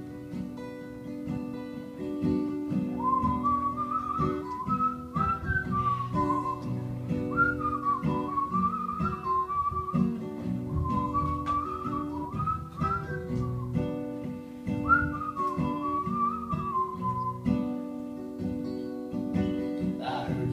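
Acoustic guitar strummed through an instrumental break, with a whistled melody over it from about three seconds in, stopping a couple of seconds before the end while the guitar carries on.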